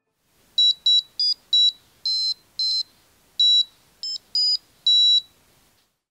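Piezo speaker on a wearable piano necktie beeping out about ten short, high-pitched electronic notes of a few different pitches as the conductive-tape keys are touched. The tones are thin and buzzy, like a simple square-wave chiptune.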